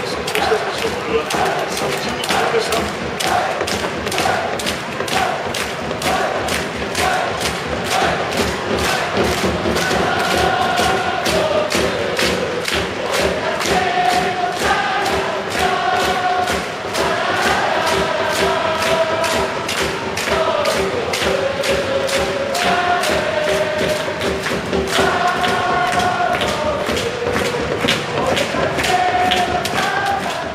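Football supporters chanting a song in unison to a steady bass drum beat, the sung melody carrying clearly over the drum through the second half.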